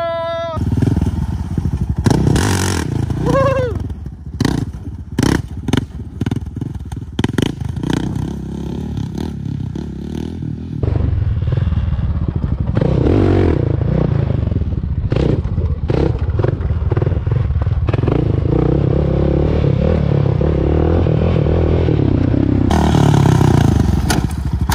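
Honda sport quad's engine under throttle during a wheelie. It opens with a run of clattering knocks and thumps, then from about halfway the engine runs steadily on the gas.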